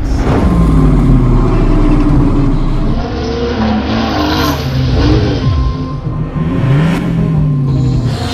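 Car engine revving, its pitch falling and rising several times, over background music.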